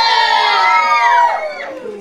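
A group of children cheering and shouting together. It starts suddenly and dies away after about a second and a half.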